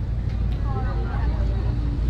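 Steady low rumble of room or handling noise, with a person's faint voice talking in the background about halfway through.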